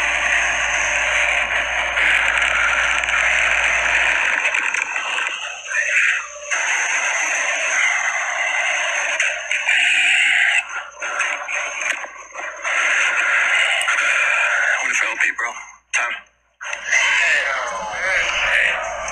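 A live crowd shouting and cheering at a battle-rap event, a dense, steady wash of many voices with a brief drop near the end.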